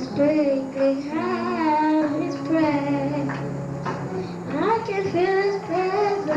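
A young girl singing solo into a handheld microphone, holding long notes that bend and waver in pitch, over a faint steady low hum.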